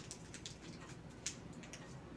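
Faint, sharp crackles and ticks of a hypodermic needle's packet being torn open by hand, with one louder crackle a little over a second in.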